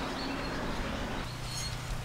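Outdoor background noise: an even hiss with a faint steady low hum in the second half.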